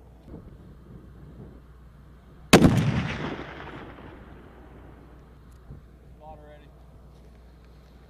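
A single shot from a .50 caliber sniper rifle about two and a half seconds in, followed by a long echo that dies away over about a second and a half.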